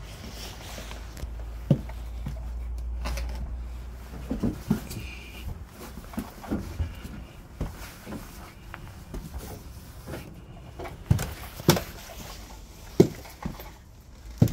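Irregular footsteps and wooden knocks on old attic floorboards and steep wooden stairs, a dozen or so short thuds at uneven spacing, the loudest near the end. There is a low rumble in the first few seconds.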